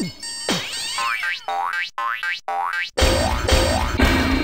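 Homemade electronic music built from sliding 'boing' sound effects: falling pitch sweeps about twice a second, then a run of rising sweeps broken by short silences. About three seconds in it turns louder and fuller, with a deep low rumble under it.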